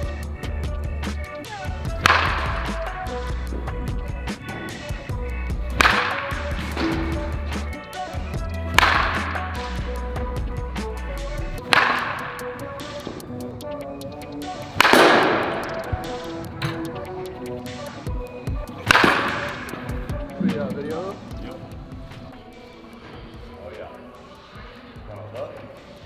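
Background music with a steady beat, over which a baseball bat cracks against balls in batting practice about six times, every three to four seconds, each crack ringing on in a large indoor hall.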